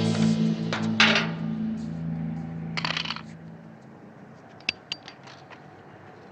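A held, low film-score chord fading out over about four seconds. There is a knock about a second in, a short clatter near three seconds, and a few light sharp clicks near the end.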